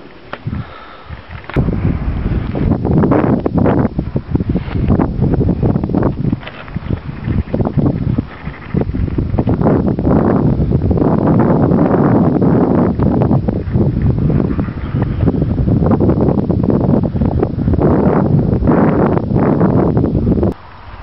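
Wind buffeting the camera microphone on an exposed coastal clifftop: a loud, uneven rush of noise that swells and dips. It starts abruptly about a second and a half in and cuts off suddenly at the end.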